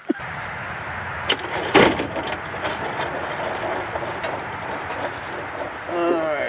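Kawasaki Mule utility vehicle's engine idling steadily, starting abruptly just after the start, with a sharp metallic clank about two seconds in.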